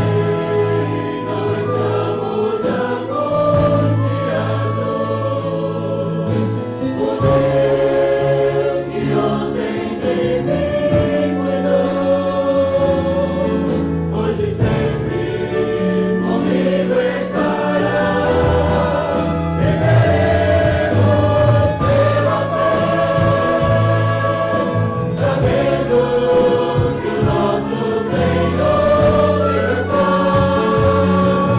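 A church group singing a hymn in Portuguese to keyboard and acoustic guitar accompaniment.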